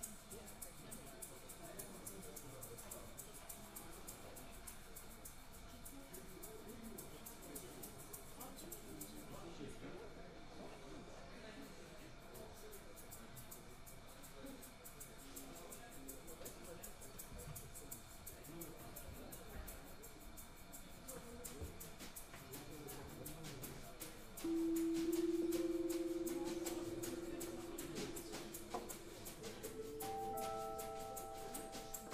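A low murmur of audience chatter. About 24 seconds in, a single sustained note on an electric stage keyboard starts abruptly and slowly fades.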